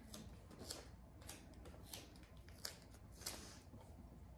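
Faint, scattered crackles of a strip of duct tape being handled and peeled from its roll, about half a dozen short crinkling sounds over quiet room noise.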